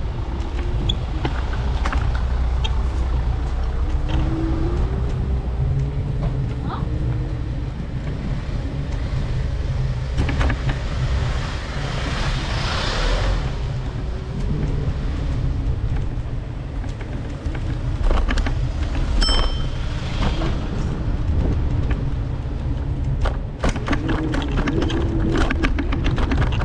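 City street traffic: a steady low rumble with car engines running nearby. A vehicle swells past about halfway through, and there is a short high tone a little later.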